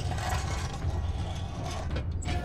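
Animated-show sound effect of a torpedo launching from its tube: a steady low rumble under a rushing hiss.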